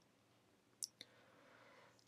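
Near silence broken by two faint clicks of a computer mouse button, a split second apart, just under a second in.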